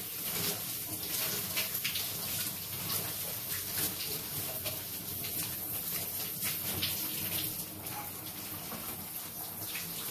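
Overhead shower running steadily, its spray splashing onto a person's body and into the tub below, with irregular splatters as water runs off him.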